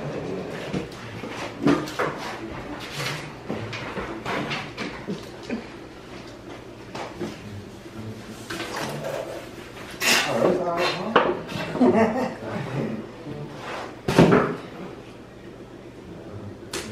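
Indistinct talking between people in a small room, with a few brief knocks of handling.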